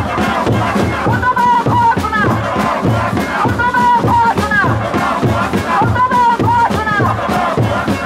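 A woman leading a rhythmic protest chant into a microphone, with the crowd chanting along, over a steady beat of drums at about two beats a second.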